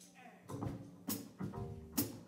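Live band starting a song: a plucked upright bass line with a sharp click on the beat about once a second.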